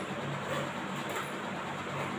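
A steady mechanical hum runs throughout, with a few light clicks as containers are handled while a lunch box is packed.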